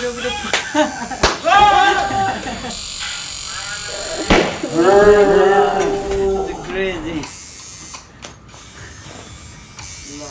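Two bursts of loud laughter, the first about a second and a half in and the second longer, around four to six seconds. An electric tattoo machine buzzes steadily at the start.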